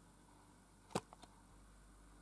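A single sharp click about a second in, followed quickly by two fainter clicks, against near-silent room tone.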